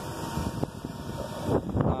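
Wind buffeting the microphone: an uneven low rumble that swells near the end, with a faint steady tone beneath it.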